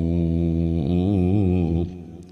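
A man's voice chanting a line of classical Arabic poetry, drawn out on one long wavering note that fades away near the end.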